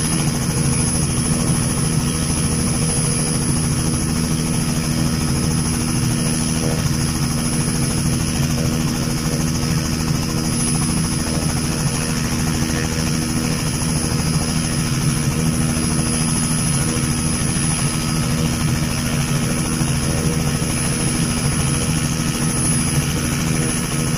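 Light two-blade helicopter running on the ground with its rotor turning: a steady drone of engine and rotor with a slow regular low pulse and a thin high whine over it.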